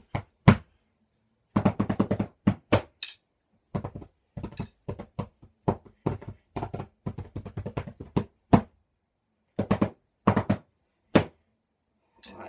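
Drumsticks beating on pillows in fast, irregular flurries of dull thuds, broken by short pauses, with a few single harder hits standing out.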